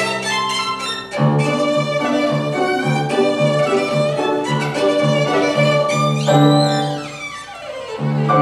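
Violin played with grand piano accompaniment, the piano repeating low notes in a steady pulse. Near the end a quick sweep falls in pitch and the music briefly softens.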